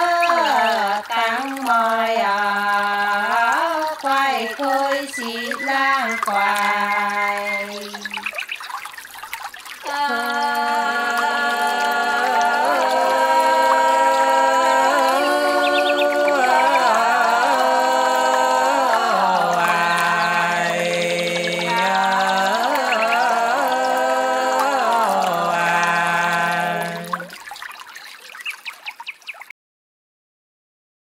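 Soóng cọ folk singing of the Sán Chỉ people: voices holding long, gliding notes in two phrases, with a short break about eight seconds in. The second phrase fades out near the end.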